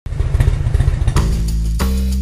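Motorcycle engine running with an uneven low rumble, starting suddenly. About a second in, music with a heavy bass line and beat comes in over it.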